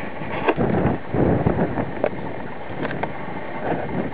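Strong wind buffeting the microphone in gusts, with a few light clicks.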